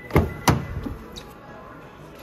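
Driver's door of a 2022 Toyota 4Runner unlocking by smart-key touch and its latch releasing as the handle is pulled. Two sharp clunks about a third of a second apart.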